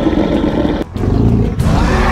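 Dubbed dinosaur roar sound effect voicing a clay Torvosaurus: a long harsh roar that breaks off just under a second in, then a shorter, deeper roar, with background music coming up near the end.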